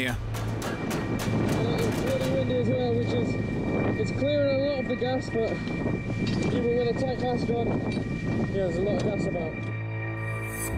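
Voices of people talking, without clear words, over background music with steady held tones. A few clicks and knocks come in the first second or so.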